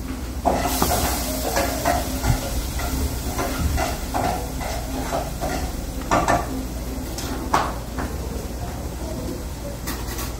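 Shrimp sizzling in a frying pan, a steady hiss, with scattered clinks and knocks of pots and utensils.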